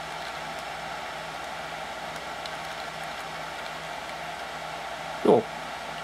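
Steady whir of computer server cooling fans with a low constant hum, and a few faint keyboard clicks as the cursor is moved through a file list.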